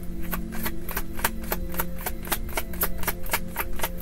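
Tarot cards being hand-shuffled: a quick, even run of crisp card slaps, about six a second.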